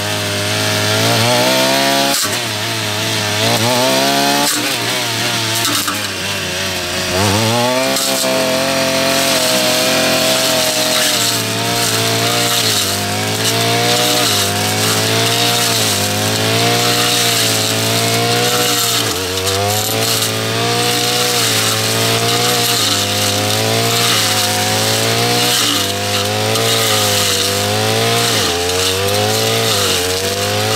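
Petrol brush cutter fitted with an XLK floating blade and vine-cutting attachment, running under load as it mows through vine-tangled weeds. Its engine note keeps dipping and recovering every second or two as the blade bites into the growth.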